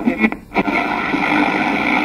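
Electronic glitch sound effect for an animated logo: a few short sharp hits in the first half-second, then a steady, harsh noisy drone.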